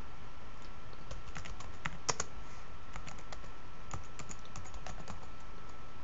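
Typing on a computer keyboard: a run of irregular quick key clicks, with a couple of louder strokes about two seconds in.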